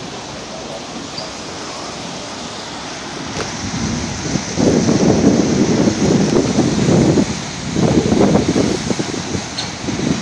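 Steady rain with a rolling thunder rumble that builds about three and a half seconds in and swells loudest twice, in the middle and again near the end.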